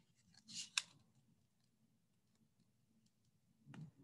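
Faint handling of a picture book's paper pages: a short papery rustle about half a second in and a soft tap near the end, otherwise near silence.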